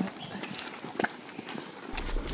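Footsteps walking on a paved path: faint, irregular scuffs and taps, with one sharper step about a second in.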